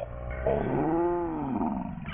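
A pitch-bent cartoon sound: one long pitched tone that rises and then falls in a smooth arch, lasting about a second and a half.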